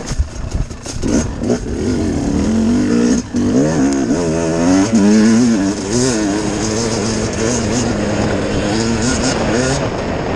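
Dirt bike engine revving up and down continuously while ridden along a trail. The engine note briefly drops out about three seconds in.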